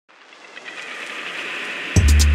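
A swelling noise-riser sound effect, a hiss that grows steadily louder and gives way right at the end to loud music with a heavy beat.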